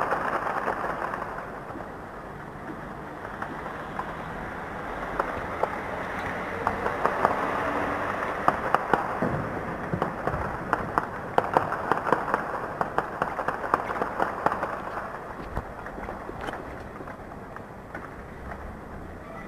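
Gunfire from fighting: many rapid shots crackling in dense volleys, thickest in the middle and thinning near the end, over a steady rushing background noise.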